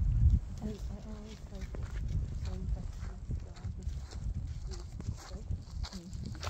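Wind rumbling on the microphone, loudest in the first half-second. Over it come irregular sharp clicks and crunches from Tatra chamois stepping and grazing on frozen, snow-crusted grass close by.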